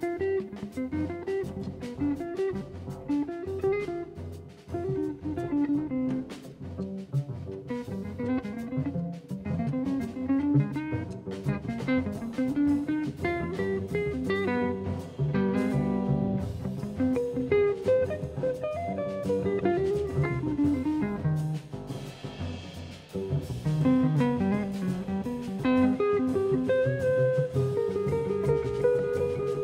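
Live jazz quartet playing, with electric guitar to the fore over upright bass and a drum kit keeping time with cymbals and drums.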